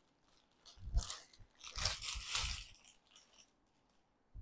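Clear plastic packaging around a saree crinkling as it is handled, in two short bursts: one about a second in and a longer one around two seconds in.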